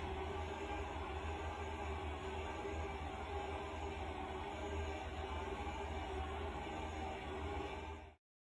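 Faint steady room tone: a low hum with light hiss.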